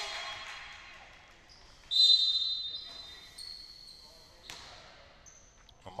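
A referee's whistle blows once, about two seconds in: a sharp, high-pitched blast that stops play and rings on in the large hall. Before it and afterwards, a basketball bounces on the hardwood court.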